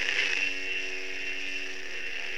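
Steady background hum and hiss with no other events: the recording's constant noise floor.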